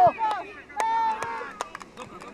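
High-pitched voices shouting across an outdoor football pitch during youth play, with a few sharp knocks and clicks among them.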